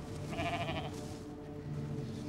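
A ram bleating once, in the first second, over soft sustained background music.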